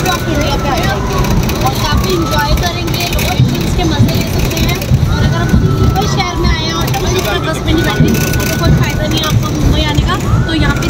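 Voices on the open top deck of a moving double-decker bus, over the bus's steady low road rumble. A recurring pitched voice line glides down now and then.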